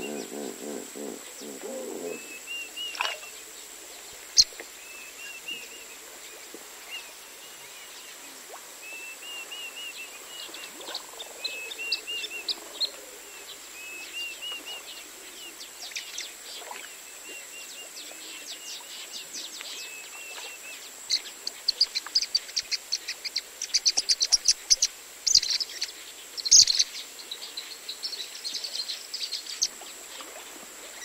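Pied kingfishers calling: a chirping note repeated every second or so, then, from about two-thirds of the way through, a burst of loud, rapid, sharp chattering calls, some slightly distorted. At the very start a low pulsed grunting, typical of a hippo.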